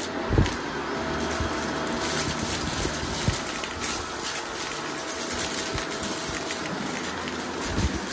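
Shark DuoClean vacuum running steadily with its brushroll on carpet, with frequent crackling clicks as glitter, sequins and paper scraps are sucked up: the "crunch" of debris rattling through the head and wand. A thump about half a second in.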